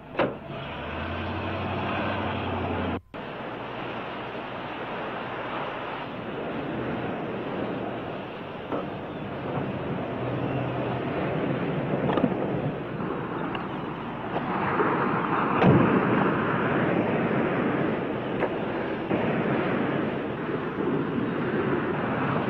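A steady engine hum, then after a brief cut about three seconds in, a continuous rushing sound of surf and wind that swells in the middle.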